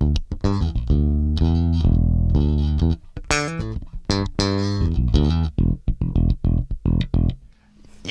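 Music Man Retro '70s StingRay single-humbucker electric bass played fingerstyle close to the bridge through an amp: a line of short plucked notes with a longer held note about one to three seconds in, dying away just before the end. A nice, tight sound, from the extra string tension near the bridge.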